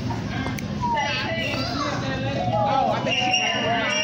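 Indistinct voices of people talking and calling out in the background, their pitch rising and falling, over a steady bed of outdoor noise.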